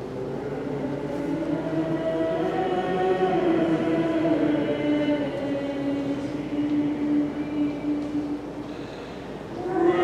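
Liturgical chant sung by a choir, a slow melody of long held notes. The singing dips near the end, then comes back louder right at the end.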